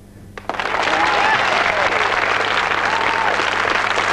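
Audience applauding, breaking out about half a second in and holding steady, with a few faint calls from the crowd.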